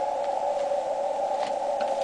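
Steady receiver band noise from an ICOM IC-735 HF transceiver tuned to an empty frequency: a narrow, even hiss pitched around the CW note. It is audible because the rig is in full break-in (QSK), with the receiver live.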